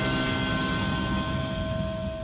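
The final hit of a TV news intro jingle: a held synth chord of several steady tones over a low rumble, slowly fading away.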